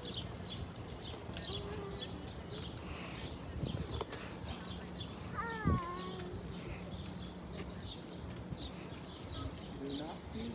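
Footsteps and stroller wheels rolling along a paved path, a steady light clicking about two times a second over a low hum. A short gliding cry about five and a half seconds in, with a knock just after it.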